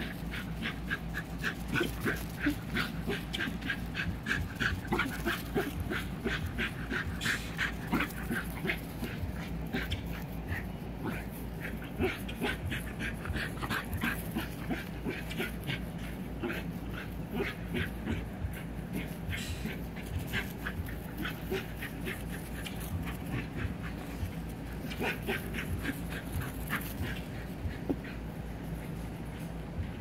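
Dogs making short, high-pitched calls in quick runs of several a second, on and off throughout.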